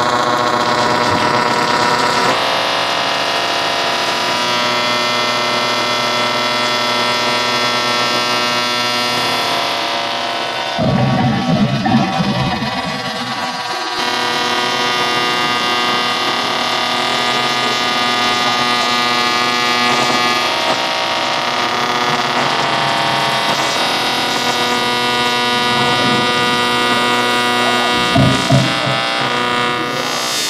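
Amplified noise music from a cordless drill held against the strings of an electric string instrument: a loud, dense drone of many steady tones. A rougher, lower grinding passage comes about eleven seconds in and lasts some three seconds, with a brief one near the end.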